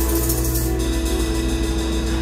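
Live band playing between sung lines: a held chord over a low bass, with a high cymbal shimmer that drops out just under a second in.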